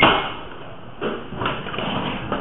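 A glass entrance door thumping as it is pushed through, loud at the start and dying away over about half a second, followed by a few softer knocks and movement noise.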